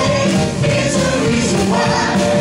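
A 1950s-style rock and roll song performed live by several singers together with a band, the voices holding long notes over a steady beat.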